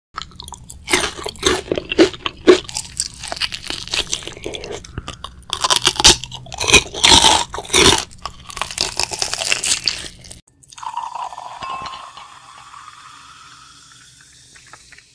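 Close-miked biting and chewing of crispy battered Korean fried chicken: loud, irregular crunches in quick runs. About ten seconds in the crunching stops and a softer sound effect with a faint rising tone takes over.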